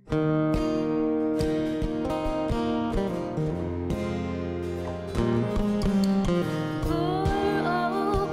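Acoustic guitar strummed in a steady rhythm, chords ringing out as the intro to a song; a woman's singing voice comes in near the end.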